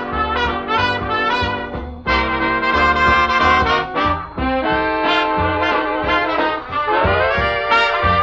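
Swing dance-band music, with brass leading: trumpets and trombones playing a lively instrumental passage, with brief breaks between phrases about two and four seconds in.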